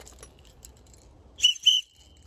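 Small orange plastic survival whistle with a built-in compass, blown in two short, high blasts close together near the end, after a little faint handling noise.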